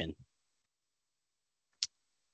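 The tail of a man's spoken word, then silence broken by one short, sharp click near the end.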